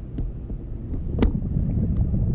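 Wind buffeting the microphone in flight as a low, uneven rumble, with a few sharp clicks, the loudest a little past the middle.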